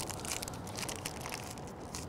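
Parchment paper crinkling faintly under the fingers as its edge is folded and pressed into hard creases.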